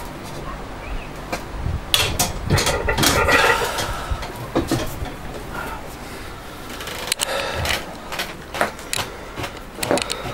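Heavy loaded barbell racked after a bench-press set, with several sharp metal knocks and clanks, and the lifter breathing hard after the effort. Scattered clicks and handling noises follow as he gets up and moves about.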